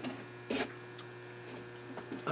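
Steady low electrical hum, with a brief soft noise about half a second in and a faint click about a second in.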